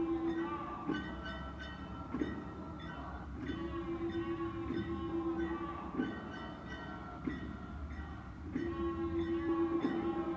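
Procession music from a street parade: singing over sharp drum strikes about every second and a half, with a low note held for about two seconds that returns every few seconds.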